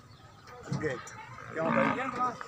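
A Nili-Ravi water buffalo calling: a short low call a little under a second in, then a louder, longer one near the end.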